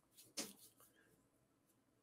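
Near silence: room tone, with one brief faint sound about half a second in.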